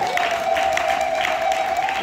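Church congregation clapping and cheering in praise, with a steady held tone running through it.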